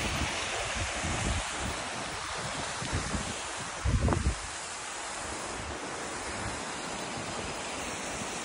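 Steady rush of a tall waterfall, with wind buffeting the microphone in low surges, the strongest about four seconds in.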